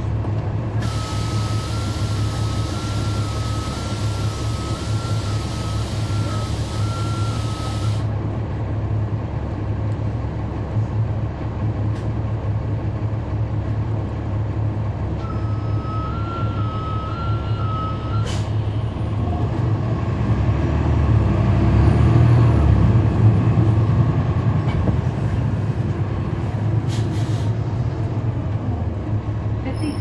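A 2011 NABI 40-SFW transit bus heard from on board, its Cummins ISL9 diesel engine running steadily. Early on a warning tone alternating between two pitches sounds for about seven seconds over a long hiss of air, and later the tone sounds again for about three seconds without the hiss. Past the middle the engine grows louder for a few seconds, then settles.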